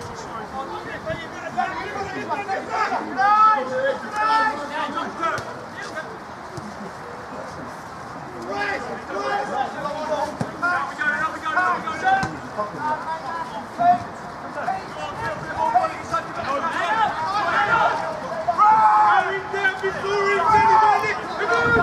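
Football players and spectators calling and shouting across the pitch over a babble of distant voices, with louder bursts of shouting a few seconds in and near the end.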